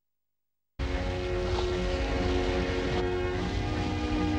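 Dead silence for under a second, then cartoon background music with held notes starts suddenly over a steady low rumbling noise; the held chord changes about three seconds in.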